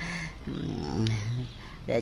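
A man's low, quiet vocal hum in a pause between phrases of speech, heard twice: briefly at the start and again about a second in.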